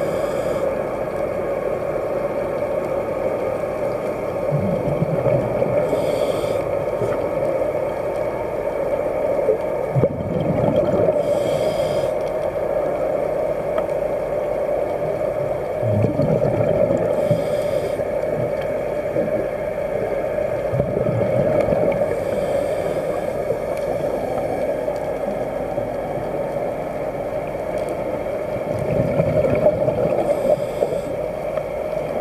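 Underwater scuba breathing: a diver's regulator giving a hissing rush of exhaled bubbles about every five to six seconds, with lower gurgling breath sounds in between, over a steady underwater hum.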